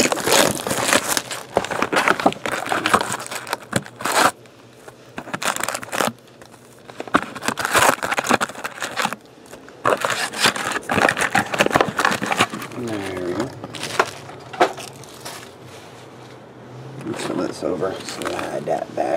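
Foil-wrapped trading-card packs crinkling as hands sort and stack them, with an opened cardboard box being handled; the rustling comes in irregular bursts with short pauses.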